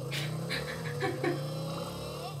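Motor scooter engine running in the anime's soundtrack: a steady low drone whose pitch creeps slowly upward as it pulls away.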